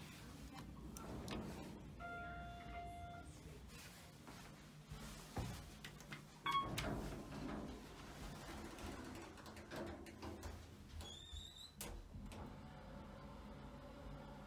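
Otis hydraulic elevator: a steady electronic chime tone sounds about two seconds in and lasts about a second, amid the low sound of the doors sliding. About six and a half seconds in a car button gives a short beep with a sharp knock, and near the end a brief wavering high tone is followed by a click.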